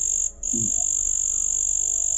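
Night chorus of calling animals: a steady, high-pitched continuous trill that drops out briefly about a third of a second in and then carries on.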